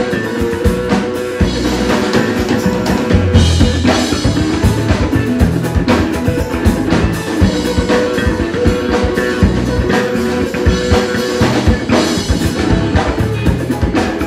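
Live rock band playing an instrumental jam passage: electric guitars over a drum kit, loud and without vocals.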